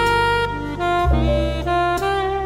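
Smooth jazz instrumental: a saxophone playing a slow, legato melody over a bass line, the bass moving to a new note about halfway through.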